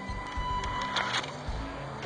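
Background music with a steady high-pitched whine from the RC truck's small brushed electric motor (an Axial 55T) driving it through the grass; the whine stops a little over a second in with a short rustling burst.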